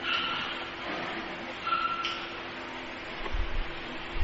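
A pause between spoken phrases, filled by a steady low electrical hum and hiss from the microphone and recording, with a faint brief whistle-like tone twice and a low rumble near the end.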